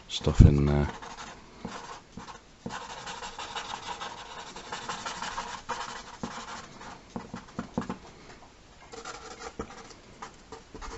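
Felt-tip Sharpie marker scratching and rubbing across paper in many short strokes as dark areas are filled in, strongest in the middle of the clip. At the very start there is a brief, low voice sound, the loudest thing in the clip.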